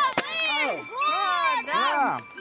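Several people's voices in long calls that rise and fall in pitch, overlapping one another, with a sharp crack shortly after the start.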